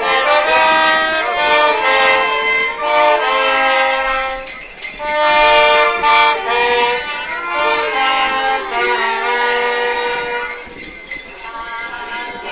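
Wind-band music: a slow melody of long held notes, loud, easing off a little near the end.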